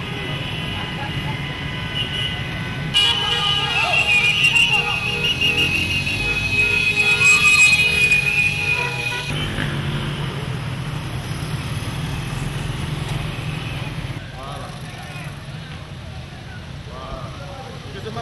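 Street motorcade noise: a crowd's voices over motorcycle and car engines. Vehicle horns hold a long steady toot that starts abruptly about three seconds in and stops about nine seconds in.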